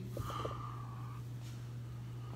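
Quiet classroom room tone with a steady low hum, a faint short breathy noise and a couple of small clicks in the first second.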